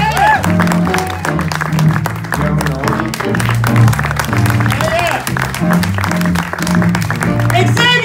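Live jazz band playing, with saxophones and drums over a stepped bass line, and audience applause mixed in.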